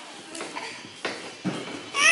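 A few soft taps and knocks over faint room noise.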